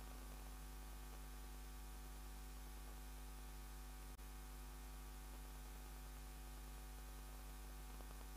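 Faint, steady electrical mains hum, a low buzz with its overtones, with one brief click about four seconds in.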